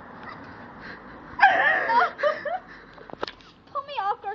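A small dog's cry: one loud call that bends in pitch for about a second, starting about a second and a half in, and a shorter wavering one near the end.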